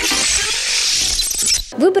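Sound effect of an animated news-segment bumper: a loud, noisy rush, heaviest in the high end with a low rumble under it, that stops about a second and a half in.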